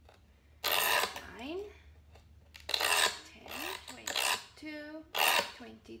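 Diamond scribe scratching along the same score line on a 1/8-inch mirror, about four gritty, rasping strokes, each under a second, as the line is gone over repeatedly. The rough sound is the sign that the scribe has cut through the mirror's backing coatings into the glass.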